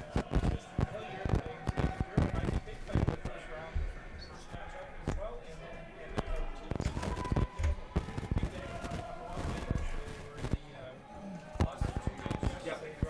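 Curling-rink ambience: frequent sharp knocks and dull thuds at uneven intervals, with distant voices between them.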